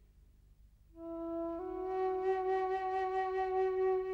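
Background music: a solo flute enters about a second in and holds one long, slow note with vibrato after a small step up in pitch.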